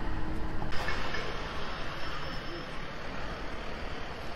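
Busy town-street ambience: steady traffic noise from passing vehicles, with a faint engine hum at first, changing abruptly less than a second in.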